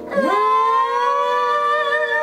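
Two women singing one long held note together without accompaniment. Both voices slide up into the note just after the start, then hold it with a light vibrato.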